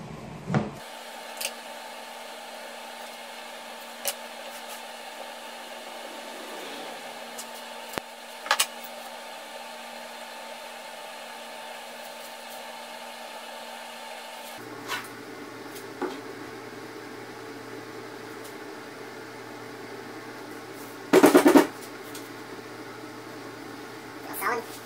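Steady hum of shop background noise with scattered light taps and knocks from a melamine jig being handled, set down and pressed onto a wooden tabletop. A loud, brief burst of noise comes about 21 seconds in.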